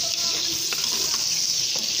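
Whole shrimp frying in hot oil in an electric rice cooker's metal inner pot, sizzling steadily while being stirred with a spoon. There are a few light knocks of the spoon against the pot.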